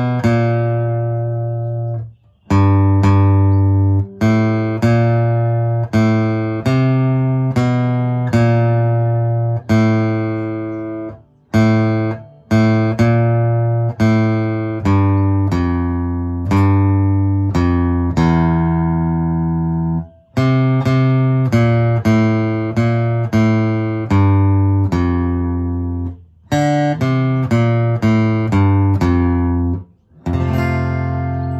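Acoustic guitar playing a slow single-note riff on the low bass strings, one plucked note at a time, about one or two a second, each left to ring. There are a few short breaks between phrases.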